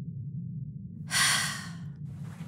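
A cartoon character's long breathy sigh, starting about a second in and fading away, over soft low background music.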